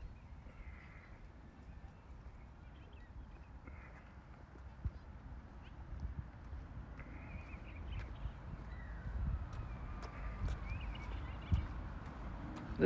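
Faint outdoor park ambience: footsteps on a concrete path under a low rumble on the phone's microphone, with short bird calls now and then in the distance.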